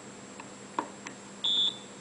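A few faint small clicks of a screwdriver working the points screw on a Lucas four-lobe distributor. About one and a half seconds in comes a single short high beep, about a quarter second long, from the points tester, signalling the points contact.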